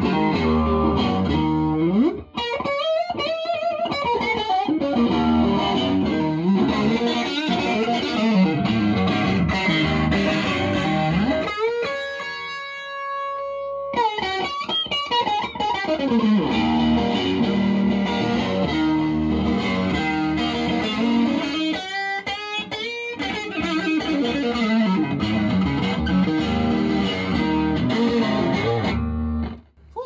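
Vintage 1963 Fender Stratocaster played through a tweed Fender Bassman amplifier: bluesy lead lines with string bends and vibrato, and a chord left to ring for a couple of seconds about halfway through.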